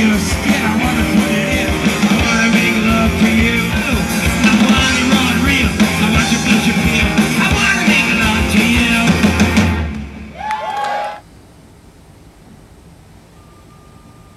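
Live rock band playing loud, with sung vocals, electric guitars, bass and drums, captured on a camcorder microphone. The music cuts off about ten seconds in. A brief pitched sound follows, then only low background noise.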